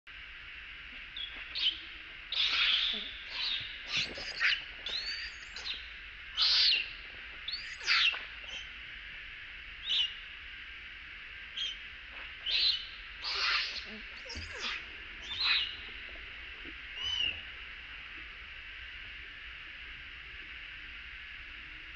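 Baby long-tailed macaque giving a series of shrill screeches and squeals, about a dozen short calls that sweep up and down in pitch. They come irregularly and stop a few seconds before the end. Typical distress cries of an infant being roughly handled by an adult.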